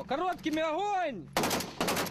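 A voice for about the first second, then, from about one and a half seconds in, a rapid burst of assault-rifle fire: sharp shots in quick succession from a Kalashnikov-type rifle.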